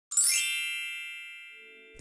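A single bright, bell-like chime struck once and ringing out, fading away over about a second and a half.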